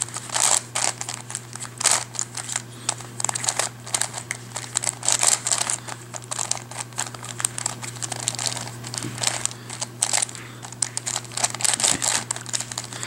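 Plastic WitEden 3x3 Mixup Plus puzzle cube being turned by hand: quick, irregular clicking and clacking of its layers and slices snapping into place as moves are made, with no let-up.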